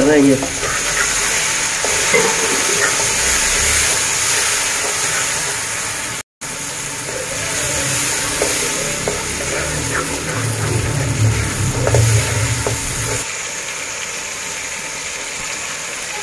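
Green peas sizzling as they fry in hot oil and onion-tomato masala in an aluminium pot, stirred with a wooden spatula. The steady sizzle cuts out briefly about six seconds in.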